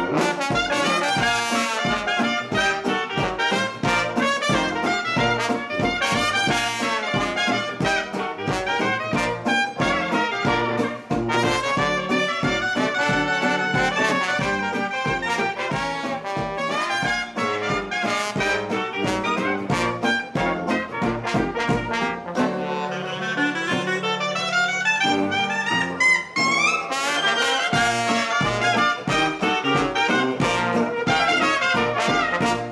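A traditional New Orleans jazz band plays live: cornet, clarinet and trombone together over sousaphone bass and strummed guitar and banjo, at a steady beat. About three-quarters of the way through, the low bass drops out for a few seconds, then a quick rising run is heard.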